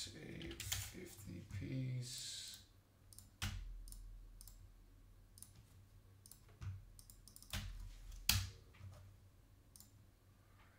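Faint, indistinct voice for the first couple of seconds, then a handful of sharp, scattered clicks and taps in a quiet small room, the loudest a little after the eight-second mark.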